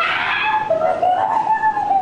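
A person's long drawn-out squeal, a held high note that rises slightly and then sags, as their feet go into a fish-pedicure tank full of nibbling fish.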